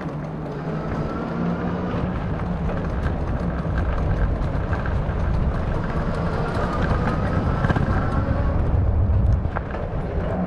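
Wind buffeting the microphone and road noise while riding a bike: a steady low rumble that grows stronger near the end.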